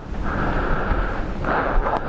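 Wind buffeting the camera microphone, a steady low rumble over a constant hiss, growing louder about one and a half seconds in.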